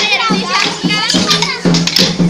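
Kolatam dance sticks clicking together in rhythm as dancers strike them, with high children's voices singing over steady musical accompaniment.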